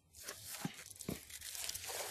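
Faint rustling of paper as pages of lecture notes are handled and turned, with two soft knocks about halfway through.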